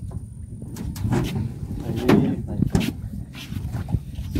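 Hollow knocks and bumps of people stepping and shifting about in small moored boats, several times over a steady low rumble.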